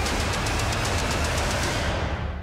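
Loud title-sequence music sting: a dense, noisy wash with heavy bass and rapid ticking on top.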